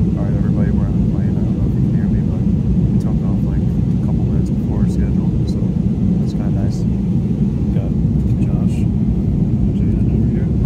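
Steady, loud rumble of airliner cabin noise from the engines and airflow, with faint voices under it.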